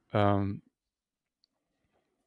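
A short voiced filler sound, a held 'ähm' or 'mhm' lasting about half a second. After it comes near silence with one faint click in the middle.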